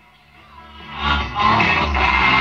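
Music from a medium-wave broadcast station heard through a crystal set as it is tuned in. It rises out of near silence about half a second in as the station comes onto the tuning, and is steady from about a second in.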